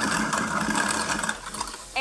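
Kitchen sink garbage disposal running and grinding lemon rinds, with tap water flowing into the drain; it cuts off about three-quarters of the way through.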